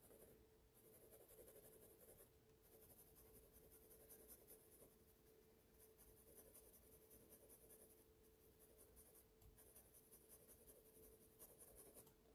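Faint scratching of an HB graphite pencil shading on drawing paper in short back-and-forth strokes.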